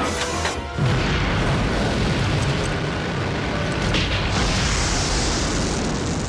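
A soundtrack boom about a second in, running on into a sustained rushing blast over the background score, with a brighter hiss in the last two seconds.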